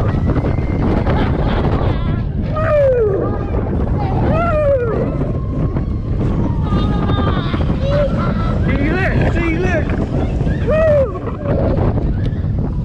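Rushing wind buffeting the microphone on a Mack Rides spinning roller coaster, under a steady rumble of the ride. Riders whoop and cry out several times, in short rising-and-falling calls.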